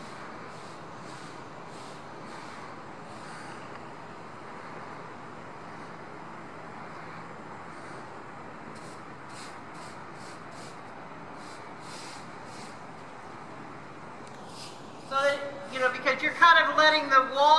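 Faint, regular hoofbeats of an Icelandic horse tölting on arena sand, over a steady background hiss. A person starts speaking near the end.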